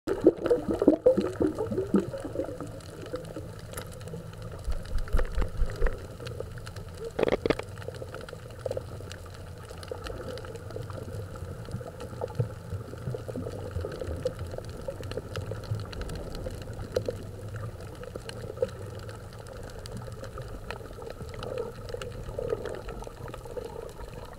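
Muffled underwater water noise picked up by a submerged camera: a steady low rumble with scattered crackles, irregular gurgling bursts near the start and around five seconds in, and one sharp knock about seven seconds in.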